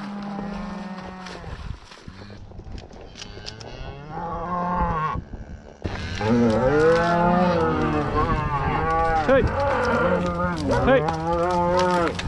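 A herd of beef cattle mooing while being driven. There are long low moos in the first seconds, then from about six seconds in many cows call at once, their moos overlapping until the end.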